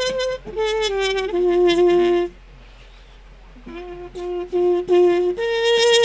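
Solo trumpet playing a slow melody: a falling run of notes ending on a held low note, a pause of about a second, then four short repeated notes and a higher held note near the end.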